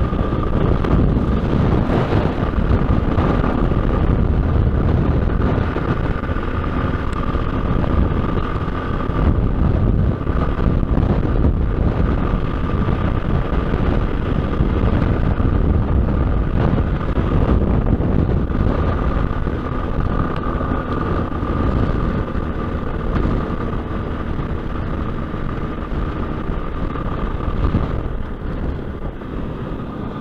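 Motorcycle cruising at road speed: the engine runs steadily under a heavy rush of wind and road noise, with a steady high whine.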